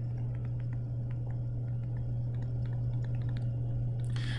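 Steady low electrical hum with a fainter steady higher tone, and faint, scattered light clicks and taps.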